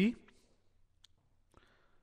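The last of a man's spoken countdown word, then quiet room tone with a faint click about a second in and another near the end, followed by a soft breath-like hiss.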